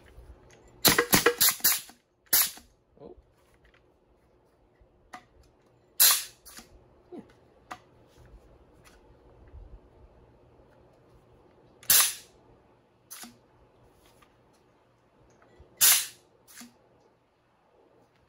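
3D-printed semi-automatic HPA (high-pressure air) Nerf blaster firing: a fast string of about five sharp air-blast shots near the start, then single shots spaced several seconds apart, one of them noticeably weaker.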